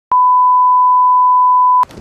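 Loud television test-card tone: one steady, pure beep held for nearly two seconds that cuts off suddenly near the end.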